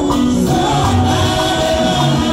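A small gospel choir singing in harmony into microphones over live instrumental accompaniment, with long held notes.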